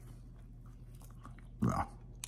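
A man biting into and chewing a soft donut, faint mouth and chewing sounds, with a brief voiced murmur about one and a half seconds in.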